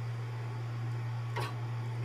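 A steady low hum throughout, with one short sound about one and a half seconds in.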